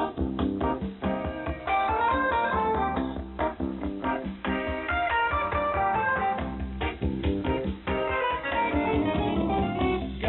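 Guitar-led music received from a shortwave pirate station in upper sideband. The sound is narrow and radio-like, with nothing above about 4 kHz.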